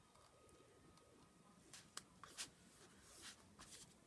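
Near silence, with a few faint rustles and ticks in the second half from hands smoothing patterned tape down onto a paper file folder.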